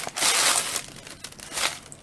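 Packaging crinkling as it is handled, loudest in the first second, with a shorter rustle near the end.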